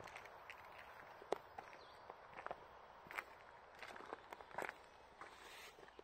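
Faint footsteps on gravel: irregular crunches and clicks over a low steady hiss.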